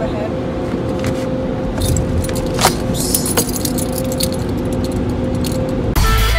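Automatic car wash machinery running, heard from inside the car: a steady hum, with a few short light clicks and rattles.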